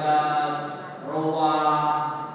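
A man's voice chanting a recitation in long held notes: two sustained phrases, with a brief dip between them about a second in.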